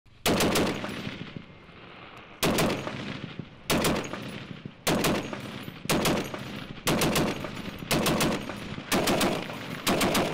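A tripod-mounted .50-calibre M2 Browning heavy machine gun firing short bursts of three or four rounds each, eight bursts about one to two seconds apart, each shot ringing out as it fades.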